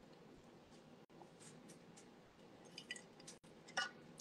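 Near silence with a few faint mouth sounds of drinking: sips and swallows of cranberry juice through a straw, a slightly louder one near the end.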